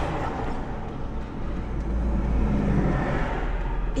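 Road traffic heard from inside a car: a continuous low vehicle rumble with road noise, louder through the middle.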